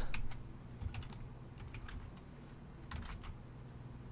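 Computer keyboard typing: soft keystroke clicks in short, uneven clusters, one near the start and another about three seconds in.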